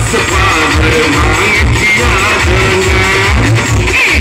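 Loud music with a sung vocal over a heavy, steady bass beat, played through a DJ sound system's stack of large horn loudspeakers.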